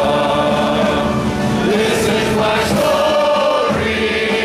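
A congregation singing a hymn together, many voices holding long notes at a steady loud level.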